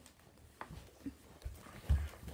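A few soft, dull thumps and rustles of someone moving on a bed, the loudest just before the end.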